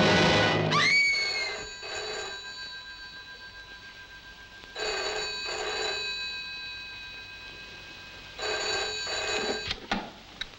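Desk telephone bell ringing in double rings, ring-ring then a pause, three times. It stops near the end with a click as the receiver is lifted.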